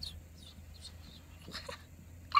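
Quiet car interior: a low steady hum with a few faint, short sounds over it.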